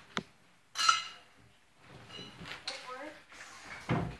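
Handling knocks while working in a metal jon boat: a click, then a loud ringing metallic clank about a second in. Lighter knocks follow, and a thump comes near the end.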